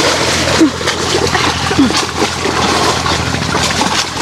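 Loud, continuous splashing of river water as two people thrash and wrestle waist-deep in it.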